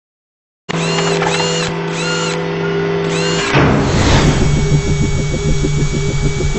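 Produced intro sound effects, electronic rather than recorded. Silence, then, under a second in, a steady electronic hum with a repeated swooping chirp. About three and a half seconds in it changes to a fast pulsing buzz.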